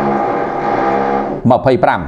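A man speaking into a microphone: he holds one long, drawn-out syllable for over a second, then carries on talking.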